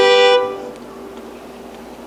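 Fiddle holding a long bowed double stop, two notes sounding together, typical of tuning just before a contest tune. It stops about half a second in, leaving only faint background sound.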